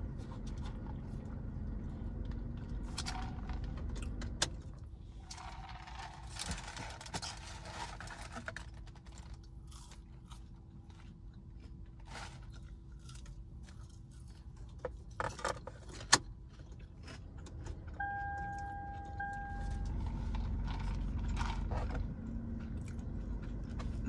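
Scattered small eating and handling noises in a car cabin: clicks, rustling and crunching from fast-food wrappers, a paper cup and fries being eaten, over a steady low rumble. A sharp click comes about two-thirds of the way through, and a short steady tone sounds a few seconds later.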